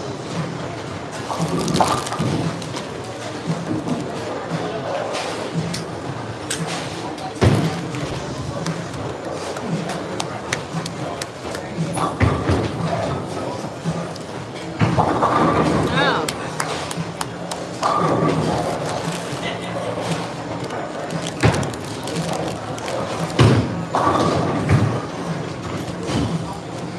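Bowling alley din: background chatter and music under the clatter of bowling balls and pins on nearby lanes, with several sharp crashes and thuds and a few longer rattling swells about 15 and 18 seconds in.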